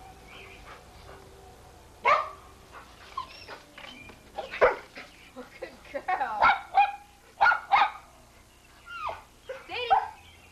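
A dog barking in a string of short, sharp barks that starts about two seconds in and comes thickest in the second half.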